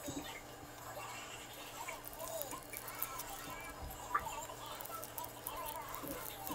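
Light handling sounds of kimbap being made on a bamboo rolling mat: soft pats and rustles of filling, then small clicks of the bamboo slats as the roll is pressed, with one sharper click a little past the middle. Faint voices murmur underneath.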